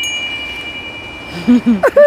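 Small brass ship's bell (rynda) held up by hand and rung, its clear high tone ringing on after a few quick strikes and fading slowly. A brief voice is heard near the end.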